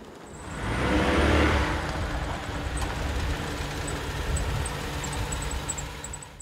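A car engine revving as the car pulls away, loudest about a second in, then running on steadily.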